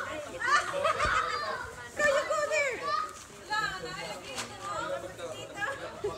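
Several children's voices calling out and shouting as they play, loudest in the first half.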